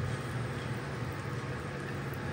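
Cornbread batter sizzling in hot oil in a cast-iron skillet, a steady hiss as its edges fry.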